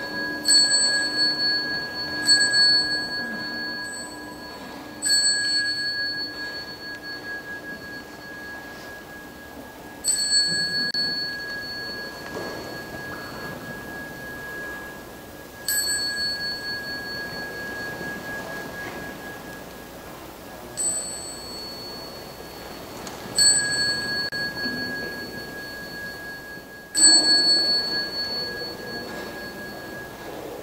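A small Buddhist ritual bell is struck about nine times at uneven intervals of a few seconds. Each strike rings on with a clear high tone that fades slowly, marking the congregation's bows and prostrations.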